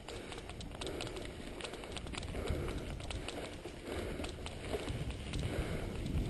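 Mountain bike rolling along a dirt track: tyres on loose dirt with frequent small clicks and rattles from the bike, over a steady low rumble.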